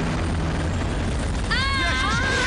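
A steady low engine-like rumble, with a high-pitched cry rising in pitch about one and a half seconds in.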